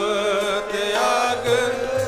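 Gurbani kirtan: sung voices held over the steady reed tones of two harmoniums, with tabla.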